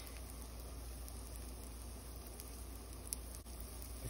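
Pancake batter cooking in melted butter in a nonstick frying pan: a faint, steady sizzle, with one small click about three seconds in.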